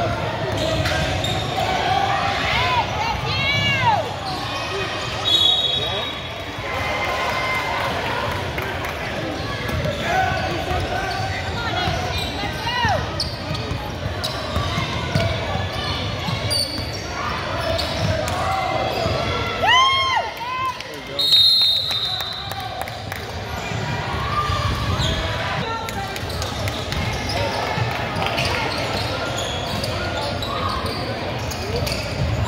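Basketball game sounds in a gym: a ball bouncing on the hardwood court, sneakers squeaking, and voices from the crowd and players echoing around the hall. Two short high whistle blasts sound about 5 s in and again about 21 s in.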